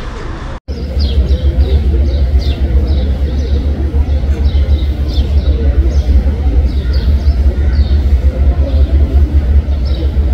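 A loud, continuous low rumble whose level flutters rapidly, with faint crowd voices and short, high falling chirps repeating about once or twice a second over it.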